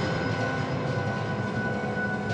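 A steady low rumbling drone with faint held high tones: a suspense sound bed from a TV drama's background score.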